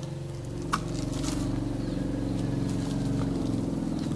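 A steady low hum made of several even tones, with a faint click about three quarters of a second in.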